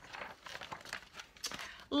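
A page of a picture book being turned by hand: light paper rustling with a few faint ticks.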